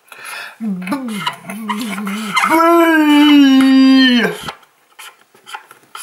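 A voice stretching out a word in a wavering tone, then holding one long steady vowel for about two seconds. Near the end come faint squeaky scratches of a felt-tip dry-erase marker writing on a whiteboard.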